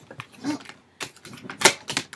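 A deck of tarot cards being shuffled by hand: a few sharp card slaps and flicks, the loudest about one and a half seconds in, as a card slips out of the deck.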